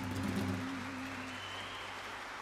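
Audience applause building as the band's last low note rings on and fades out about a second and a half in.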